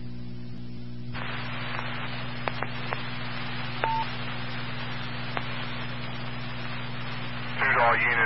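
Amateur radio repeater audio from a scanner: a steady low hum, then about a second in the channel opens to a steady radio hiss with a few faint clicks and a short beep about four seconds in. A man's voice comes over the radio near the end.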